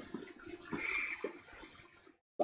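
Someone drawing on a tobacco pipe: a few quiet puffs with small soft lip pops and a brief soft hiss.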